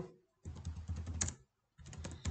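Typing on a computer keyboard: a quick run of keystrokes starting about half a second in and lasting about a second, then more keys near the end.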